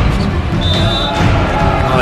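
Volleyball being struck during a rally, with a sharp hit near the start, under background music with a steady beat.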